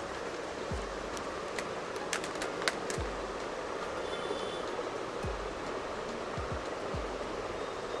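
Steady background noise of a busy shop. On top of it are faint scattered clicks and crinkles as a plastic pack of rolling crayons is handled, and a few soft low bumps.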